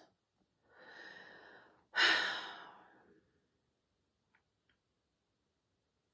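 A woman breathes in softly, then lets out a heavy sigh about two seconds in. Two faint clicks follow.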